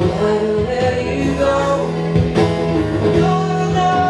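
Live pop band playing: acoustic guitar and keyboard with a voice singing over them.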